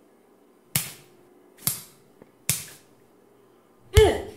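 Three punch sound effects, sharp hits landing about a second apart, over a faint low steady hum.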